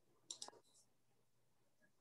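Near silence, with one faint, brief click about a third of a second in.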